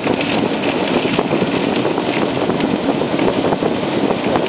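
Storm-force wind buffeting a car, heard from inside the cabin, with rain and sea spray pattering in many small ticks on the windscreen and bodywork.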